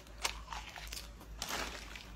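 Crisp crunching and chewing of a mouthful of fried mealworms: a couple of sharp bites in the first half, then a longer crunch a little past the middle.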